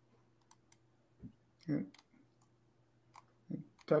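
Mostly quiet with a faint steady low hum and a few scattered sharp clicks, with a single spoken "yeah" near the middle.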